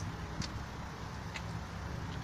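A motor vehicle engine running steadily, a faint low hum, with a couple of light clicks.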